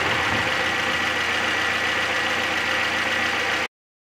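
Four-cylinder petrol engine idling evenly, heard close up in the open engine bay, with a faint steady high whine. The misfire is gone now that the spark plug's rubber boot is properly seated. The sound cuts off abruptly near the end.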